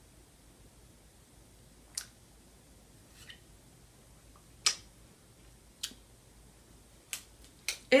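Wet mouth clicks and lip smacks from tasting a hard lollipop: about six short, sharp clicks spaced a second or so apart, one a little after halfway the loudest.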